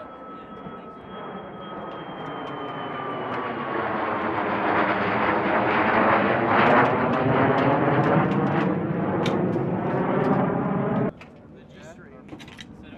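Jet aircraft flying past: the engine sound builds over about six seconds, with a whine that falls in pitch at first, then cuts off abruptly about eleven seconds in.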